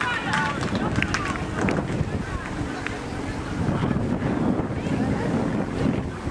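Wind buffeting the microphone, with distant shouting voices, mostly in the first two seconds.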